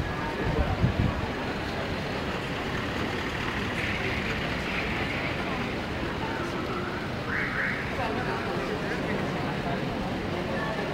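Cars of a motorcade driving slowly past, a steady traffic hum of engines and tyres, with people talking nearby and a few low thumps near the start.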